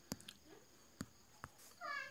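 A cat meows once near the end, a short call that bends in pitch, after a few faint clicks.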